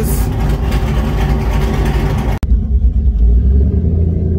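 Steady vehicle noise with no speech. About two and a half seconds in it cuts suddenly to a low, steady rumble of engine and road noise inside a Jeep's cabin.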